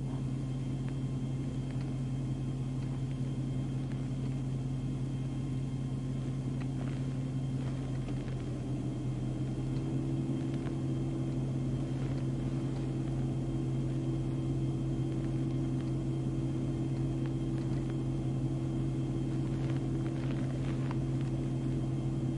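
Parked police patrol car's engine idling, heard from inside the cabin as a steady low hum; the hum's upper tone steps up slightly about nine seconds in.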